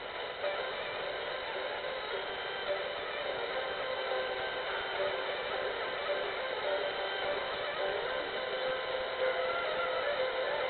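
Turkish folk music from TRT Türkü playing through a small portable FM radio, thin and tinny, under a steady hiss from weak long-distance reception.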